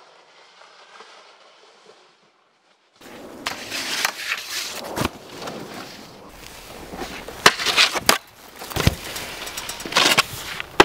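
A faint hiss, a moment of silence, then from about three seconds in a snowboard scraping over packed snow, broken by a series of sharp knocks and thuds from the board hitting snow and metal rails.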